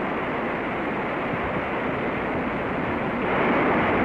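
Surf washing onto a beach and a vehicle engine running, blended into a steady rushing noise that grows slightly louder about three seconds in.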